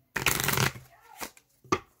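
A tarot deck being shuffled by hand: a quick rush of cards riffling together for about half a second, followed by two sharp snaps of cards being tapped or cut.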